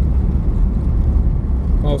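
Steady low rumble of a car driving along a road, heard from inside the cabin: engine and tyre noise.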